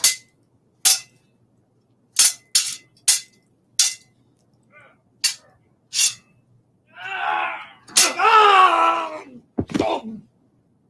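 Sword-fight sound effect: a string of sharp, unevenly spaced metal blade clangs, about nine strikes, some of them ringing briefly. Near the end a voice yells for about two seconds, then one last clash.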